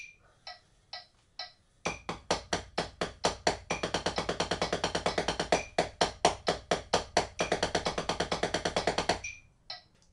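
Drumsticks playing a double stroke roll (two strokes per hand, RRLL) on a rubber practice pad at 130 BPM. Four evenly spaced clicks count in, then the doubles alternate a bar of eighth notes with a bar of sixteenth notes, twice over, and stop about nine seconds in.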